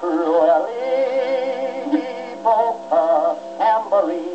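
A 1928 Diva 78 rpm record playing music through a late-1925 Victor Orthophonic Credenza acoustic phonograph: a wavering melody over held accompaniment notes, with thin tone and no deep bass.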